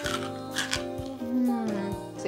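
Homemade crunchy chickpeas being chewed, giving several short crisp crunches over steady background music.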